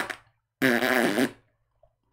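Fart noises, twice: the first cuts off just after the start and the second lasts under a second.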